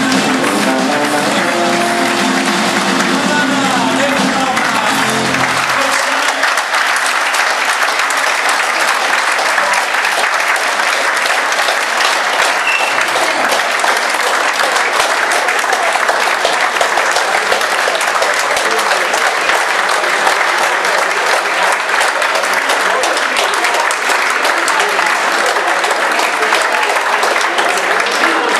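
A live country band with acoustic guitars finishing a song, the music ending about six seconds in, followed by steady audience applause.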